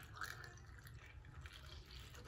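Faint trickle of thick homemade liquid detergent pouring from a plastic bowl into a plastic funnel.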